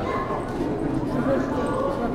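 Indistinct chatter of a crowd of visitors, many voices overlapping steadily with no single clear speaker.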